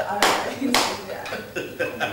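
Hands clapping in amusement during laughter, two loud claps in the first second and a few fainter ones after.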